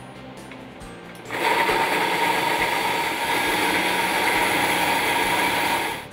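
Countertop blender switched on about a second in and running at a steady high speed, puréeing a liquid cheesecake filling of ricotta, yogurt and egg, then stopping right at the end.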